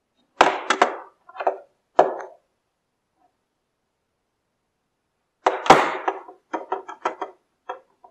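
A plastic router case handled and knocked against a wooden desk. A few knocks in the first two seconds, then a quicker run of knocks and clatter from about five and a half seconds in.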